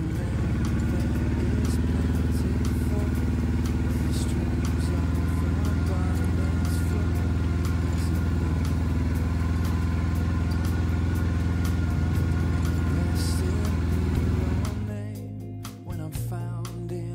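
Farm tractor engine running at a steady speed, heard from the driver's seat. About a second before the end it drops away and guitar music comes in.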